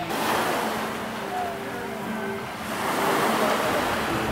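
Small waves washing onto a sandy beach. The wash is loudest at first, eases off, then swells again after about three seconds.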